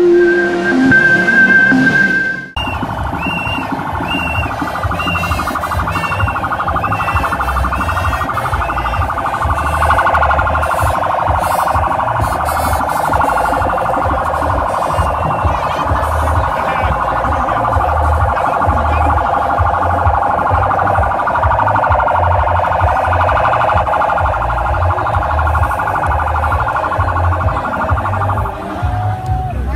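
A short electronic music sting that cuts off suddenly, then several motorcade sirens wailing together, loud and steady, with a repeated chirping note for several seconds and a pulsing low beat underneath.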